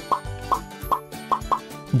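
A quick run of about five short cartoon pop sound effects, one every half second or so, each marking a word tile popping onto the screen, over soft background music with steady held notes.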